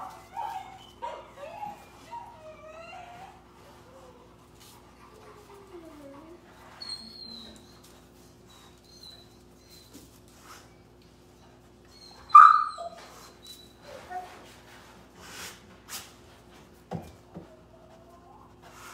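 Puppy whining in short, gliding whimpers, with one sharp yip about twelve seconds in.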